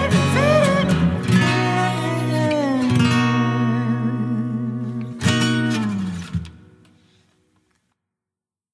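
Live band music ending a song: strummed acoustic guitar over bass, with a wordless vocal line at the start. A final strummed chord about five seconds in rings out and dies away.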